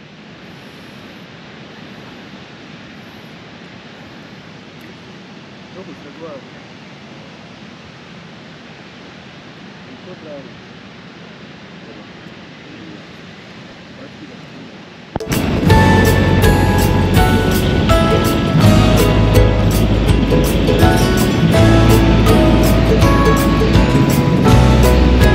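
Ocean surf washing onto a sandy beach as a steady, even rush. About 15 seconds in, it cuts abruptly to much louder background music with a steady beat and heavy bass.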